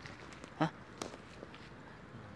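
A man's short exclamation, "hah," about half a second in, over low background with a few faint clicks.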